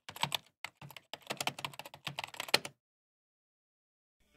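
Computer keyboard typing: a quick, irregular run of key clicks that stops a little under three seconds in.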